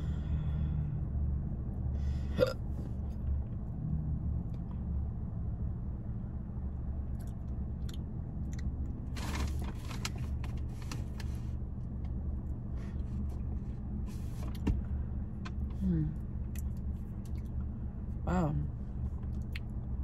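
A person smoking a pre-roll in a parked car's cabin, over a steady low hum. About nine seconds in comes a long breathy exhale of smoke, lasting about two seconds. Near the end there are a couple of short throat or hiccup-like sounds.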